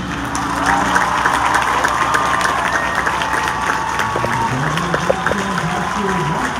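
Stadium crowd applauding and cheering with high shouts as a marching band's performance ends; a nearby voice talks near the end.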